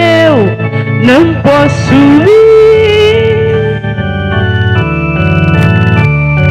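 A worship song sung by a single voice over electronic organ accompaniment: the voice finishes a phrase on a long held note about two seconds in, then the organ holds chords on its own near the end, pulsing with tremolo.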